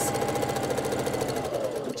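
Electric sewing machine stitching a seam at speed: a fast, even rattle of needle strokes over a steady motor hum, stopping near the end.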